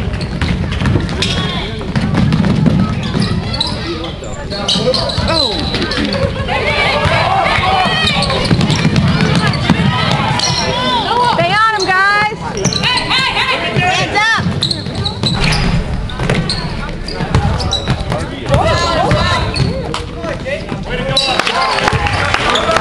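Basketball being dribbled on a hardwood gym floor during play, with sneaker squeaks, including a quick run of high squeaks about halfway through, over spectators' voices.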